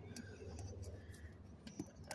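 Faint scratching and clicking of fingers picking at the plastic wrap on a plaster excavation block, with a bird calling faintly in the background.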